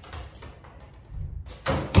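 Quiet taps and thuds of a small ball bouncing on a concrete floor, with one sharp knock near the end.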